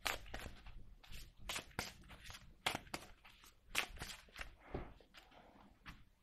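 A deck of Petit Lenormand oracle cards being shuffled and handled by hand: a run of irregular sharp card snaps with softer rustling between them.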